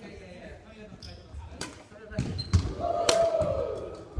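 Badminton rally in a large hall: sharp racket strikes on the shuttlecock and feet thudding on the wooden court, four strikes and thuds about half a second apart in the second half, with a held, ringing sound lasting about a second near the end.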